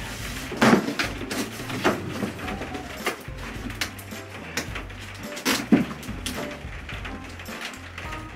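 Cardboard box being opened by hand: the flaps and packing rustle and scrape, with a few sharper rips or scrapes about a second in, near two seconds, near four seconds, and loudest near six seconds. Background music with a steady bass line runs underneath.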